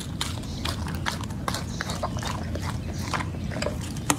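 Chocolate Labrador chewing and biting raw meat, a quick irregular run of wet clicks and smacks from its jaws and tongue, over a steady low hum.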